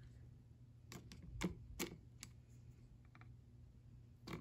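A handful of faint, sharp clicks and taps of feeding tongs knocking against a plastic cup while trying to grip a thawed feeder mouse, bunched between about one and two and a half seconds in.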